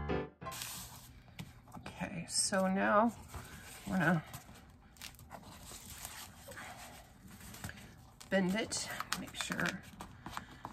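Paper and card being pressed and handled on a cutting mat as a journal cover is glued down, a faint rustling with small taps. A few short murmured vocal sounds from a woman break in, and piano music stops at the very start.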